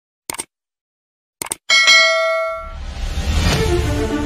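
Subscribe-button animation sound effects: a quick double mouse click, another click about a second later, then a bright bell ding that rings out. A swelling whoosh follows as music comes in near the end.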